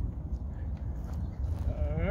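Low, steady rumble of wind buffeting the microphone. Near the end a man's voice starts up with a drawn-out, sliding vocal sound.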